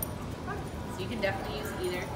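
A dog yipping a few times, each a short high-pitched call.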